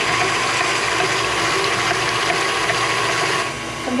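KitchenAid Artisan stand mixer running steadily, its wire whip beating heavy cream in a stainless steel bowl. The sound cuts off about three and a half seconds in.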